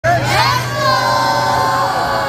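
A group of children shouting together, their voices rising at the start and then held in one long call over a low steady hum.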